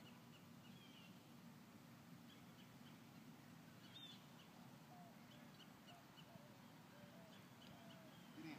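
Near silence: quiet outdoor ambience with faint, scattered short bird chirps.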